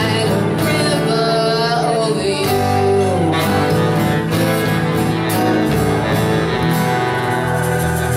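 Live band playing a slow song: a woman singing over acoustic guitar, saxophones, electric guitar and drums.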